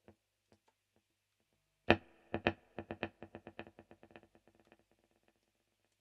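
A few faint footswitch clicks, then an electric guitar note struck about two seconds in, played through a Boss DD-3T digital delay and a Walrus ARP-87 set to quarter-note and dotted-eighth times. A rapid train of echo repeats follows and fades out over about three seconds.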